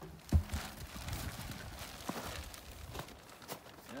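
Handling noise: a plastic bag of popcorn bait blocks rustling and irregular footsteps, with one sharp thump about a third of a second in followed by scattered light knocks.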